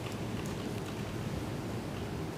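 Steady room noise: an even hiss and low rumble with no distinct events.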